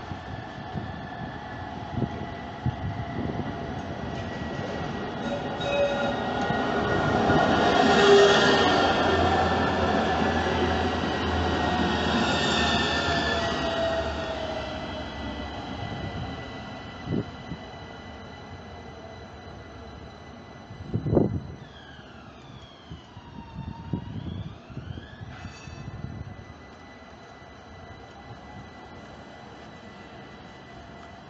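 Florence street tram (AnsaldoBreda Sirio) running along street track, growing louder to a peak about eight seconds in as it passes close, then fading away. A sharp knock follows about twenty-one seconds in, and a few short gliding squeals come a little after.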